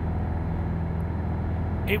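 Piper PA-28 single-engine piston aircraft droning steadily at climb power, engine and propeller heard from inside the cockpit. A voice begins just before the end.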